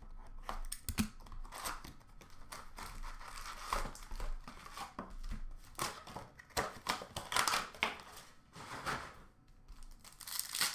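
Trading-card packs being torn open by hand, the wrappers crinkling, with irregular rustles, scrapes and light taps of cardboard and cards.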